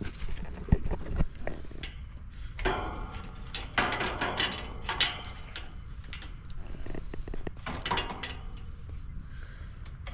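Hands handling wiring inside an outdoor air-conditioner condenser cabinet: a few knocks in the first second or so, then rustling and scraping as wires are pulled and moved against the metal casing, twice.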